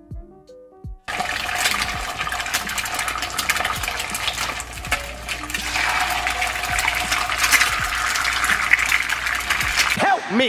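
Eggs frying in a nonstick pan: loud, steady sizzling with dense crackle. It starts abruptly about a second in, after a moment of music.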